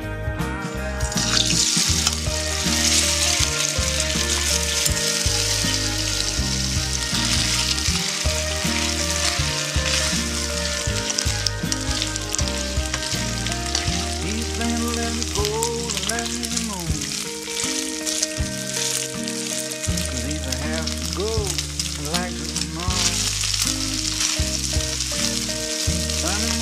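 Shredded chicken breast frying in hot oil in a wok, a dense steady sizzle that starts about a second and a half in as the meat goes into the oil and goes on while it is stirred with chopsticks. Background music plays underneath.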